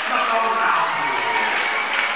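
Stadium crowd applauding, a steady clapping that runs under a man's voice.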